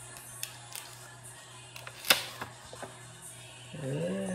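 Paper envelope being opened by hand: a few light paper crackles and one sharp rip about two seconds in as the sealed flap comes loose. A short voiced hum starts just before the end.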